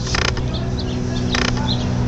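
Small birds giving short, high chirps, with two brief rasping bursts (one just after the start and one near the middle) over a steady low hum.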